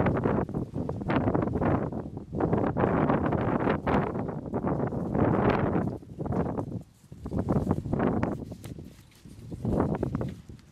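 A thin black plastic seedling pot rustling and crinkling in bursts of a second or two as hands squeeze it and work it off the seedling's root ball.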